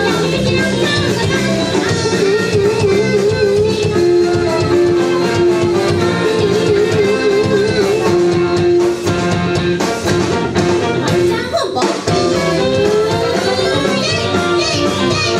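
A live rock band with a horn section playing: drums, electric guitars, bass and keyboard under long held melody notes that waver in pitch, with a brief dip in loudness about three quarters of the way through and a rising slide near the end.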